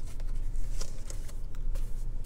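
Faint clicks and light crackles from a plastic takeout bento tray and its clamshell lid being handled, over a low steady hum.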